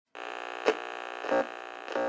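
Synthesized intro drone for a channel logo: a steady buzz of many stacked tones that swells briefly three times, about two-thirds of a second apart.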